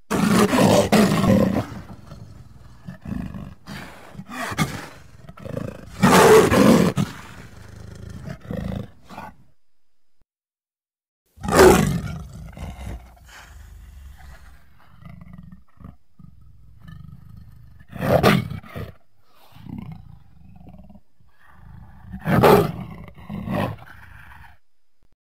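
Cartoon black panther sound effects: a series of separate big-cat roars, the loudest at the start, about six seconds in, near twelve, near eighteen and about twenty-two seconds in, with quieter growling between them. A short silence after about ten seconds marks a cut between clips.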